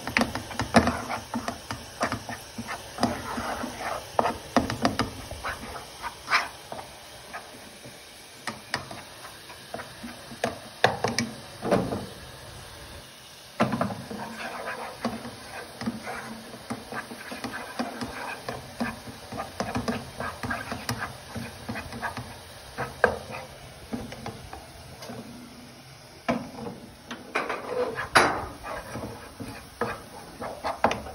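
Wooden spoon stirring and scraping cornmeal toasting in butter in a nonstick frying pan, with irregular knocks of the spoon against the pan.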